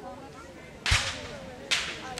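Two black-powder musket shots, sharp cracks a little under a second apart, each trailing off briefly; the first has a heavier low thump.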